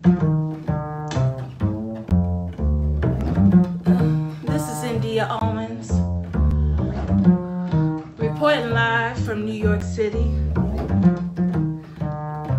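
Upright double bass plucked in a jazz line, with a woman's voice singing over it at points.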